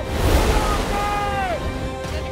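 Ocean surf washing in, a sudden rush of wave noise at the start, under music and long held voice-like tones that drop in pitch near the end.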